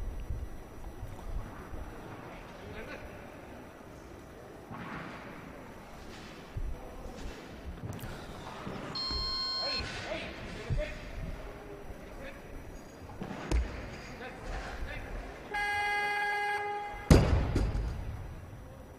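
Competition weightlifting: a buzzer sounds for about a second and a half near the end, the down signal for a lift the referees pass. Right after it, an 88 kg barbell with rubber bumper plates is dropped onto the wooden platform with a loud thud. A shorter electronic beep comes about halfway through.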